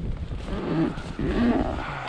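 Wind buffeting the microphone in an open field, a steady rushing noise, with faint low sounds underneath too muffled to name.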